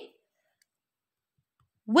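Near silence between two spoken words: one word ends just as it begins and another starts near the end.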